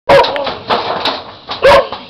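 A puppy barking in short, high yaps: one at the very start and another about a second and a half later.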